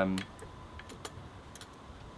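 A few faint, scattered light clicks from fingers working around the trigger guard of a Remington 700 rifle, feeling for the bolt release under the trigger.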